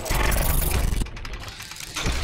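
Sound effects for an animated logo intro, with a loud, dense noisy rush for about the first second. It cuts off sharply in a few clicks, and a quieter stretch follows.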